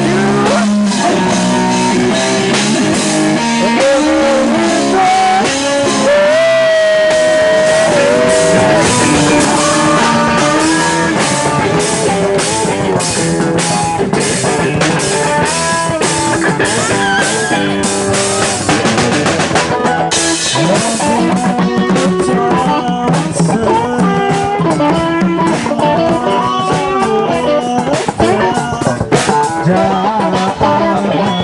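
Live band playing loud rock: electric guitar over drums, with hand drums played alongside.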